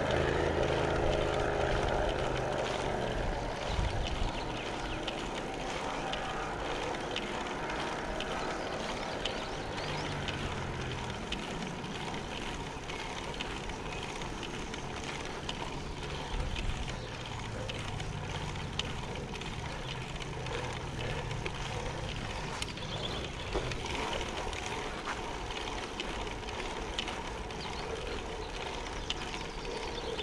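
Steady wind and road noise of a road bike riding uphill, picked up by a body-worn action camera. Motor vehicle engines drone past several times: one fades away in the first few seconds, another passes with a falling pitch about a third of the way in, and another passes later.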